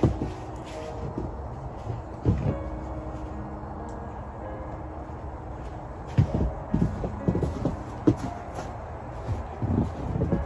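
Footsteps crunching in snow close by, a cluster of steps about six to eight seconds in, over a steady low background rumble. There is a single knock right at the start and another about two seconds in.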